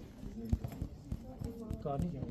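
Irregular low thumps and knocks close to the microphone, about half a dozen spread through the clip, over faint voices in the room; a man's voice starts speaking near the end.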